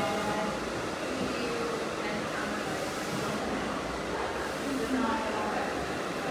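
Steady rushing noise with no clear strokes or tones, with faint voices in the background.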